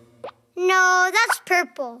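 Cartoon baby's voice: a held, hummed "mmm" that rises at the end, then a few short babbled syllables and a falling "No" near the end, after a faint click in a brief hush.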